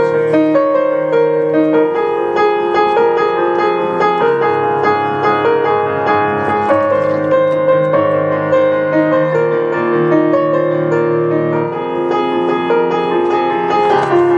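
Piano playing an instrumental piece: held chords in the low range with a melody line moving above them, notes changing about every half-second to a second, without a break.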